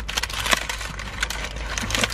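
A paper burger wrapper being unwrapped and crumpled in the hands: a run of irregular crackles and rustles, with a sharper crackle about half a second in.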